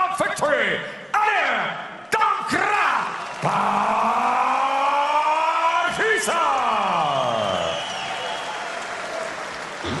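Ring announcer calling the winner over an arena PA, with short words first and then the name drawn out in one long held call that swoops up and slides down, echoing in the hall. Crowd applause runs underneath.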